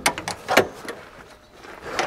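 Metal clicks and knocks of a Jeep's swing-away rear carrier being latched closed, a quick cluster in the first half-second.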